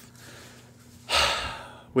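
A man's deep breath drawn in through the mouth about halfway through, after a short pause in his talk, fading off just before he speaks again.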